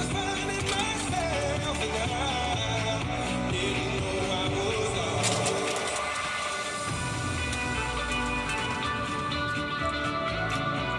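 A pop song playing on a Top 40 radio broadcast, with a singing voice in the first few seconds. The bass drops away briefly about six seconds in, then the full band returns.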